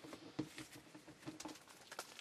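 Faint, scattered clicks and taps of a stack of baseball cards being handled and set down on a table.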